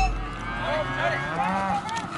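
A calf bawling in a few short calls.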